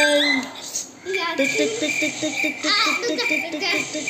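Voices only: a long held vocal note ends just after the start, then about a second in a child's voice rattles off a quick run of short, high, sing-song syllables, about five a second, for nearly three seconds.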